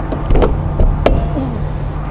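Motorcoach luggage bay door pushed shut by hand and latching, with a few light clicks and one sharp latch click about a second in, over a steady low rumble.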